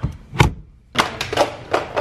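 Knocks and thuds of parts coming off a Nissan Skyline R32: two heavy thuds in the first half second, then a quick run of lighter knocks and taps.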